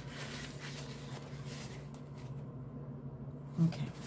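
Soft rustling of hands handling a paper towel at the table, strongest in the first two seconds, over a low steady hum.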